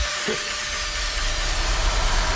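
Electronic dance music in which a steady white-noise wash covers the track, with a low bass pulse continuing beneath it.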